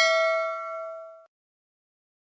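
Notification-bell 'ding' sound effect from a subscribe-button animation: one bell tone rings out and fades, then cuts off abruptly about a second and a quarter in.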